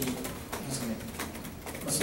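A man's brief low hesitation sounds between spoken phrases: two short, steady-pitched hums near the start and just under a second in, over quiet room tone.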